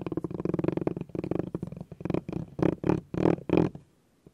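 Spiky massage ball rolled and rubbed by hand close to the microphone: its bumps make a dense, rapid rattle of fine clicks, with several louder surges in the second half before it stops just before the end.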